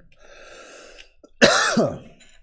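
A man coughs once, about one and a half seconds in, after a faint breath. He is nursing a cold.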